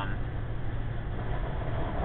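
Cab interior of a 2009 diesel truck cruising on the highway: a steady low engine drone with road and tyre noise over it.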